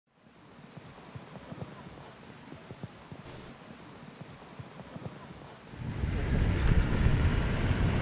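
Faint outdoor ambience with irregular light clicks, a few a second. About six seconds in, a louder low rumbling noise sets in.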